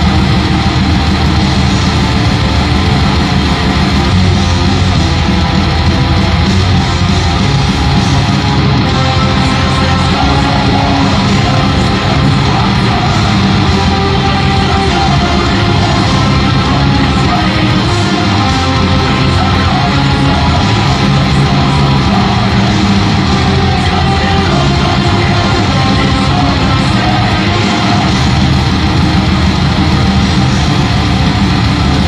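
Distorted electric guitar playing a very fast heavy metal song with rapid picking, dense and continuous throughout.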